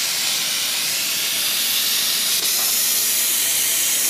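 Steady hiss of water spraying out of an Amtrol Well-X-Trol WX-250 well pressure tank whose bladder has failed.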